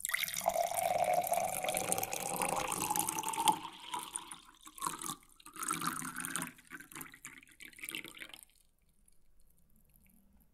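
Watery, dripping sounds in an electronic IDM track, with a faint rising tone under them. They start suddenly and stop about eight and a half seconds in, leaving a faint tail.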